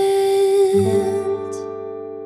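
The end of a slow pop ballad: a singer holds one long final note, and just under a second in a guitar-and-bass chord comes in and rings on, slowly fading.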